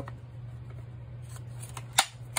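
Light plastic clicks of a Safariland 6304RDS duty holster being handled with a pistol seated in it. Right at the end comes one sharp click as the holster's retention hood snaps closed over the gun.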